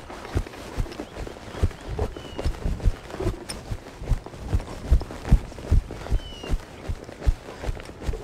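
Horse trotting on a soft dirt arena: a steady run of dull hoofbeats, about three a second.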